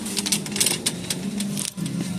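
Shopping cart rattling and clicking as it is pushed along, a quick irregular clatter.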